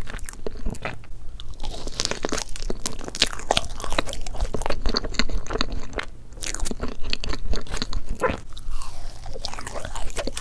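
Close-miked chewing of soft layered crepe cake: a quick, uneven run of small mouth clicks and smacks.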